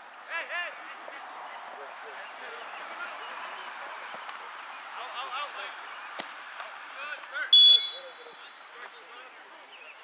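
A referee's whistle blown once, short and shrill, about three quarters of the way through. Players on the pitch shout and call out around it.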